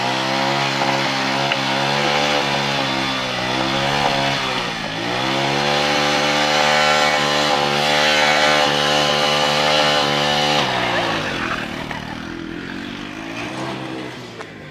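A motorcycle engine revved hard and held at high revs, dipping briefly about five seconds in and climbing again, then dropping back to lower revs about ten and a half seconds in.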